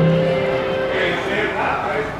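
Live acoustic band holding a sustained chord that dies away about a second in, followed by a wash of crowd noise.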